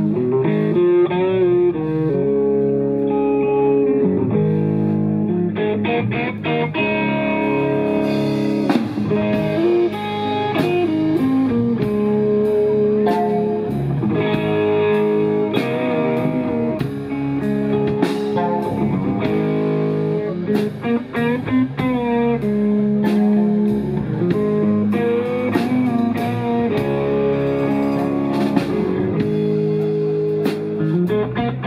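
Live band playing an instrumental blues-rock passage: a semi-hollow electric guitar leads over bass guitar and drum kit. The cymbals come in strongly about eight seconds in, keeping an even beat.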